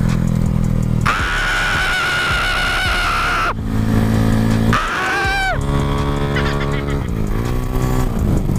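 Yamaha Mio scooter's single-cylinder engine running under way, its pitch dipping and rising again as the throttle eases off and back on near the end. A loud, wavering, high-pitched scream is held for about two and a half seconds early on, and a shorter falling cry follows a couple of seconds later.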